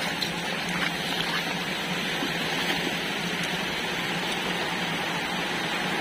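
Steady rush of running water with a low, even hum beneath it and a few faint clicks.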